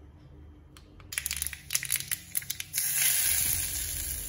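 Mustard seeds and a dried red chilli crackling in hot oil for a tempering (tadka). Popping begins about a second in, and a steady sizzle takes over near the end.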